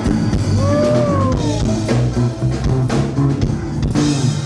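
Live ska band playing: drum kit, electric bass and keyboard keep a steady beat, with one long sliding note that rises then falls about half a second in.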